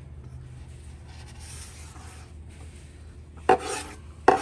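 Faint scratchy handling, then a short, sharp knife cut into a yellow dragon fruit's scaly skin about three and a half seconds in.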